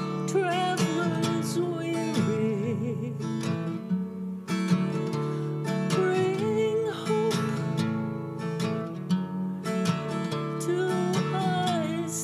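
A woman singing to her own strummed acoustic guitar, with vibrato on her held notes.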